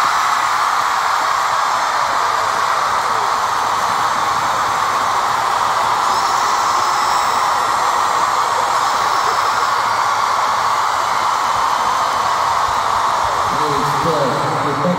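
Arena concert crowd screaming and cheering as a steady wall of noise.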